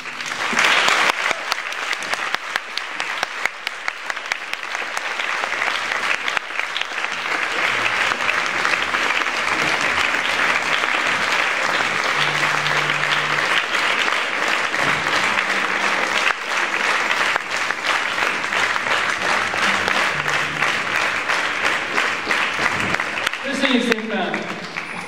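Concert-hall audience applauding steadily at the end of a piece. The clapping breaks out suddenly and keeps going at an even level for over twenty seconds.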